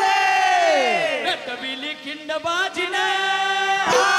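Marathi powada singers holding a long, loud sung cry that slides down in pitch about a second in, followed by shorter sung phrases over a steady low drone.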